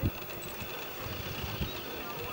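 Low, uneven background rumble, with a short thump at the very start.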